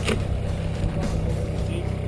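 Steady motor drone from the bowfishing boat, with a brief splash or knock just after the start and again about a second in.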